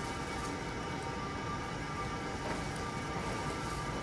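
Steady, low background room noise with a faint constant hum, unchanging throughout.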